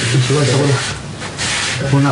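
A man's low, drawn-out voice without clear words, then a harsh rasping hiss about a second and a half in, and the voice again at the end.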